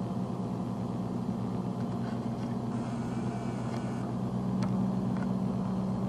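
1988 International 8300 truck's diesel engine running steadily at idle, a little louder over the last couple of seconds.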